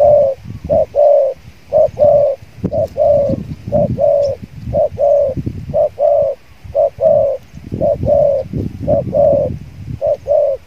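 Spotted doves cooing: a quick, unbroken run of short coos, about two a second, often in pairs, as two doves square up to each other.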